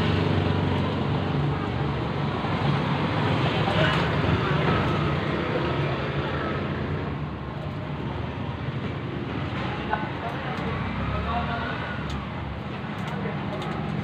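Steady background noise with a low hum, with faint voices in places.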